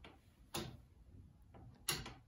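Ticking of a 1670 turret clock's escapement, the escape wheel working through the pendulum: two sharp ticks, about half a second in and near the end, with fainter clicks between.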